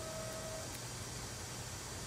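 Faint steady room tone with a low hiss during a pause in speech, and a thin faint tone that dies away about half a second in.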